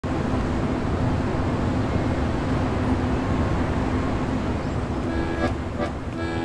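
Steady city traffic ambience, a dense wash of street noise. About five seconds in, sustained accordion notes begin over it.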